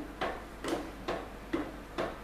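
Steady rhythmic knocking on wood, about two knocks a second, evenly spaced.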